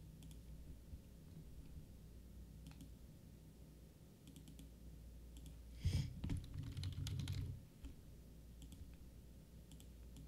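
Faint computer keyboard and mouse clicks. About six seconds in comes a louder, rough burst of noise lasting about a second and a half.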